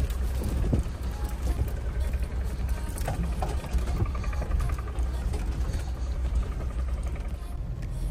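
Inside the cab of a Mahindra Thar 4x4 rolling over an unpaved gravel road: a steady low rumble of engine and tyres, with scattered knocks and rattles as the vehicle jolts over the rough surface.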